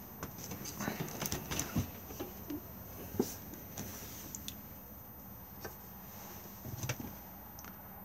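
Faint clicks and light knocks as a Dometic caravan fridge door is opened and handled, most of them in the first couple of seconds and a few more later on.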